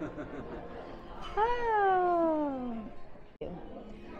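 A person's long, drawn-out exclamation, one sustained vocal sound sliding steadily down in pitch for about a second and a half, over the low murmur of a busy dining room. The sound breaks off sharply near the end.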